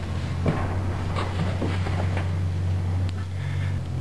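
A steady low hum with a few faint clicks and knocks over it.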